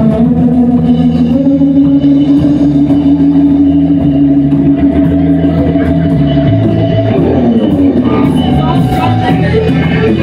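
Live rock band playing an instrumental break: an electric guitar holds one long sustained note, then plays quicker notes near the end, over bass guitar and drums.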